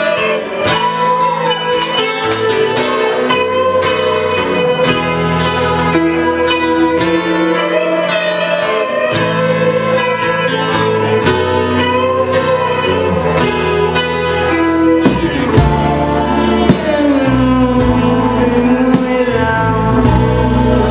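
A live band playing a slow, jazz-tinged indie pop song, led by electric guitars over a bass line. The bass gets fuller about fifteen seconds in.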